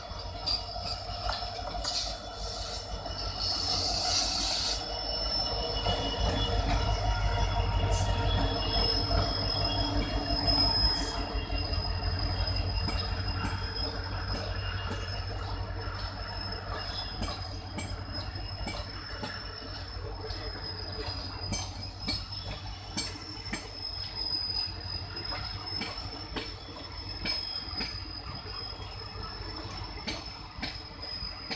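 EMD WDG-4 diesel locomotive's two-stroke V16 passing, its low rumble swelling as it goes by. A train of empty coaches then rolls past with repeated wheel clicks over the rail joints and a steady, high wheel squeal.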